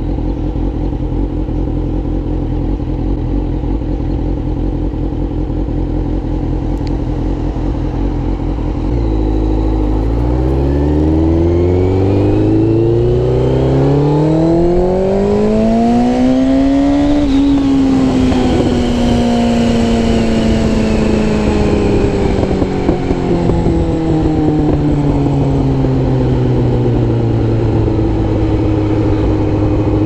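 Motorcycle engine running steadily with wind noise, then about nine seconds in the revs climb smoothly for several seconds as the bike accelerates. The engine note peaks and then falls slowly as the bike rolls off the throttle.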